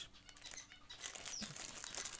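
Faint crinkling of a thin clear plastic parts bag, handled with scale model car tyres inside it, with small scattered crackles.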